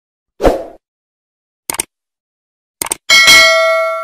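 Subscribe-button animation sound effect: a short thud, then two quick double clicks, then a bell ding that rings on and slowly fades.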